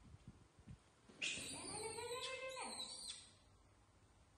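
Baby macaque screaming: one loud, shrill call of about two seconds, starting about a second in, rising and then falling in pitch.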